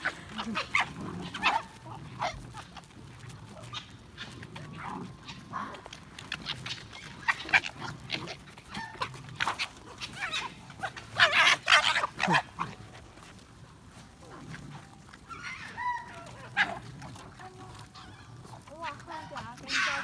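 A pack of red foxes squabbling over scattered food, giving many short, harsh calls one after another, with a loud flurry of calls a little past the middle.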